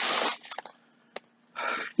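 A plastic shopping bag and cellophane packaging rustling and crinkling as an item is pulled out. There are a few small sharp clicks in the middle and another short rustle near the end.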